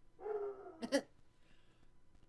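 An animal's short whining call that ends in a sharp yip about a second in.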